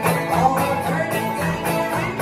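A gospel string band playing live: acoustic guitars and upright bass in a bluegrass-style tune with a steady beat.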